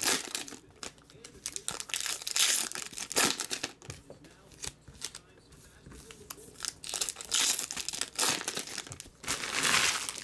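Foil wrappers of 2017 Topps Fire baseball card packs being torn open and crinkled by hand, in several irregular bursts with a quieter stretch in the middle.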